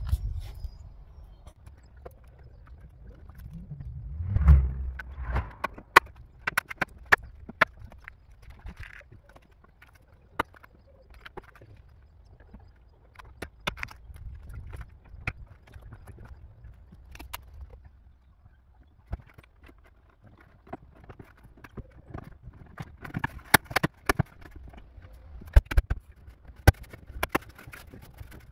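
Plastic trim clips snapping and a plastic tailgate trim panel knocking as the panel is pressed back onto a van's tailgate: an irregular run of sharp clicks and taps, with a louder low rumble about four and a half seconds in.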